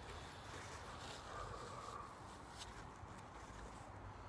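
Faint rustling and crinkling of a paper towel being unfolded by hand, with a couple of light clicks, over a quiet outdoor background.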